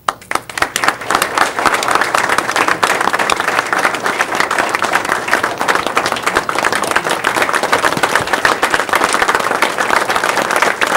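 A room of people applauding. A few claps start it and it builds within the first second into dense, steady clapping.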